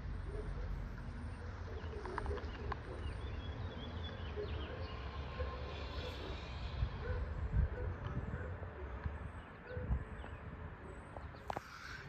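Twin F2 outdoor warning sirens sounding faintly in the distance, their steady tones dying away near the end as they shut off.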